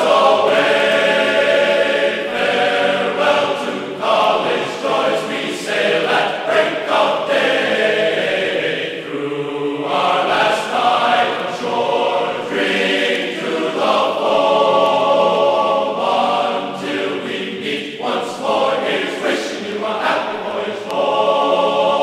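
Classical choral music: a choir singing sustained chords that shift every second or two.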